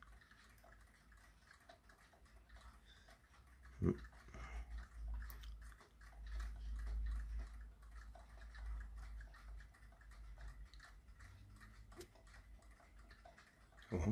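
Faint quick ticking from a small Peltier-powered stove fan spinning. Under it is a low rumble on the microphone, with a thump about four seconds in.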